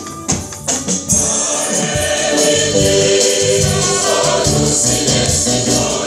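A mixed church choir singing a Luganda offertory hymn with band accompaniment: acoustic guitar, electric bass guitar and keyboard, with jingling percussion. After a few sharp percussion hits, the full choir and band come in together about a second in.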